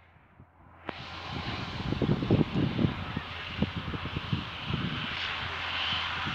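Irregular low rumbling buffets on an outdoor microphone over a steady hiss, starting about a second in.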